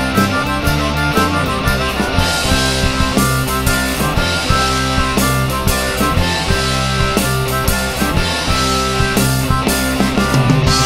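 Rock music from a full band: distorted electric guitars holding sustained chords over a driving drum kit beat.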